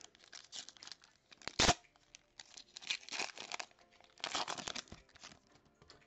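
A trading card pack's wrapper being torn open and crinkled by hand: a sharp snap of the tear about a second and a half in, then irregular crinkling rustles as the wrapper is pulled apart.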